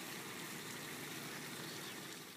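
Faint, steady background hiss with no distinct events.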